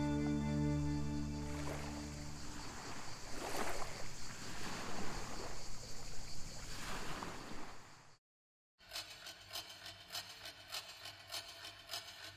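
Soft, slow background music fades out over the first couple of seconds. It gives way to the gentle wash of small waves lapping a shore, swelling every second or so. After a moment of dead silence at a cut, only faint rapid clicking remains.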